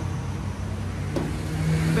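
Steady low hum of a motor vehicle engine from the street, with one faint click about a second in.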